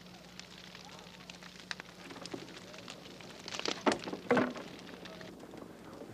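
Open wood fire burning in a pit, crackling with scattered sharp pops and snaps. Voices rise briefly about two-thirds of the way through.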